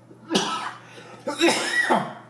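An older man coughing: two harsh bouts about a second apart.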